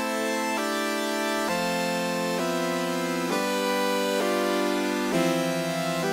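Ableton Meld synth playing a progression of sustained chords from its scale-aware chord oscillator, a new chord about every second, each held straight into the next.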